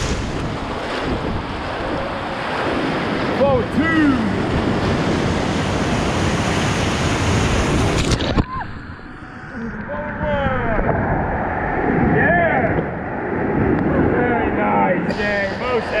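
Whitewater rapid rushing loudly around a raft, with people shouting over it. About eight seconds in, the sound suddenly turns muffled as a wave breaks over the raft and water covers the microphone, then clears again near the end.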